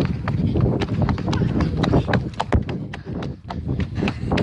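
Running footsteps of the person carrying the phone: a quick irregular series of thuds and knocks, with a low rumble of air and handling noise on the microphone.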